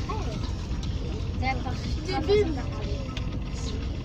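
Steady low road and engine rumble of a moving limousine heard from inside the cabin, with faint, scattered voices talking over it.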